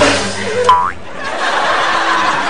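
A short cartoon 'boing' spring sound effect with a quick pitch glide, about two-thirds of a second in, over background music.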